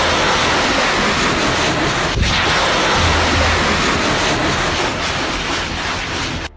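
Missile rocket motor at launch: a loud, steady rush of noise over a deep rumble, with a sharp crack about two seconds in.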